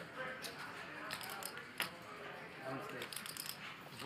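Quiet poker-table room tone: faint murmured voices with scattered light clicks and taps of chips and cards on the table, the sharpest click a little under two seconds in.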